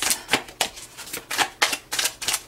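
A deck of tarot cards shuffled by hand, the card edges snapping together in a quick, uneven run of crisp clicks, about four a second.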